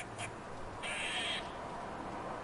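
A crow gives one short, harsh caw about a second in.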